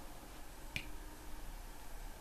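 A single light tap on an interactive whiteboard, one short sharp click about three-quarters of a second in, over faint room tone.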